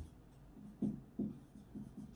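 Marker pen writing on a whiteboard: a few short, separate strokes, faint, in the second half.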